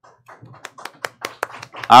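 Light applause from a few people, faint, quick separate claps at about five a second. A man's voice starts over it near the end.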